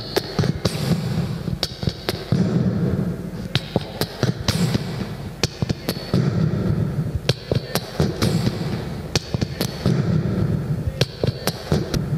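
Beatboxing into a handheld microphone cupped against the lips: quick, uneven clicks and snare-like hits, with a low tone that comes and goes every few seconds.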